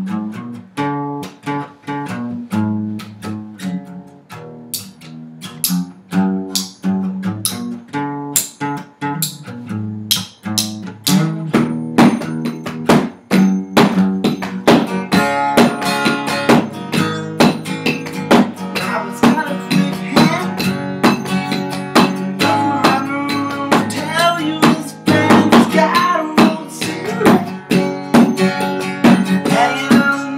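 Acoustic guitar strummed together with a makeshift drum kit: a pair of forks used as drumsticks, hitting cardboard boxes as snare and tom and a hockey puck as hi-hat, with a cardboard flap as kick, in a steady rock beat. The drumming is sharp clicks and taps over the guitar, and it gets busier and louder about 11 seconds in.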